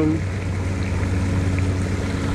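Fountain water splashing steadily into its pool, with a steady low hum underneath.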